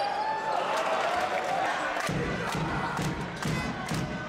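Basketball crowd cheering and chanting in a gymnasium, growing fuller about halfway through, with a few sharp knocks in the second half.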